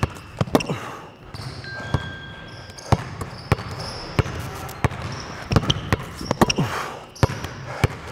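A basketball bounced on a hardwood gym floor in quick, irregular dribbles during crossover moves, with short high squeaks from sneakers on the court.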